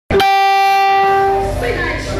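A single loud, steady held note with a rich, horn-like tone starts abruptly out of a gap in the audio and holds for about a second and a half, then voices come back in.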